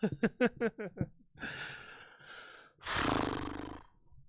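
Laughter: a quick run of about seven short bursts in the first second, then two long breathy exhales, the second louder.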